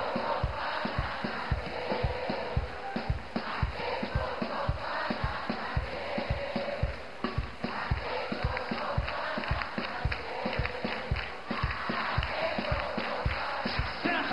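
Live gospel worship music with a steady drum beat, a large congregation singing along and clapping.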